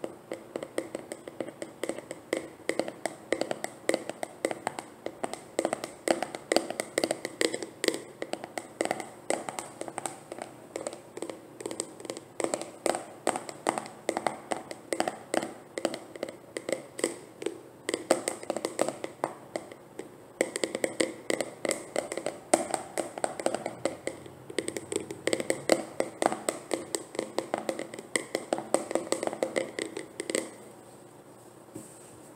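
Fingernails tapping quickly on a plastic jar of Cantu leave-in conditioner, a steady run of hollow clicks at about four to five a second.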